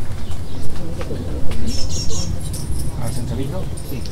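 A person coughing twice, about a second in, while small birds chirp in short high bursts.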